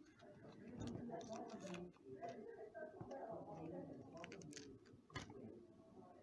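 Small clicks and crinkles of a hearing-aid battery blister card being handled as a button battery is pried out, over faint background talk. The sharpest click comes a little after five seconds in.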